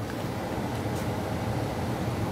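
A steady low mechanical hum with a couple of faint ticks near the middle.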